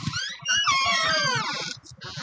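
A bird calling at night: a burst of high, overlapping notes that slide down in pitch, starting about half a second in.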